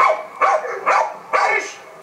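A bull terrier-type dog barking eagerly in quick succession, about four barks, as it strains on the leash toward a bite sleeve: the excitement of a dog keen to grab the sleeve in sport protection work. The barks fade near the end, heard as played back over the loudspeakers of a lecture room.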